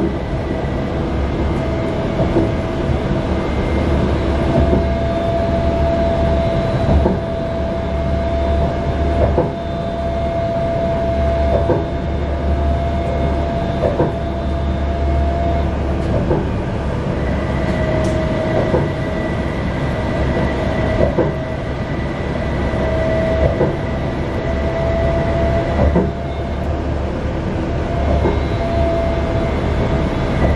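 Utsunomiya Light Rail HU300 low-floor tram running between stops, heard from inside the front of the car. There is continuous rolling noise, a steady electric motor whine, and a short wheel knock about every two seconds.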